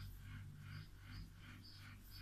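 Very faint, soft rustling of cotton yarn being drawn through stitches with a metal crochet hook, in quick even strokes about four a second, over a low steady hum.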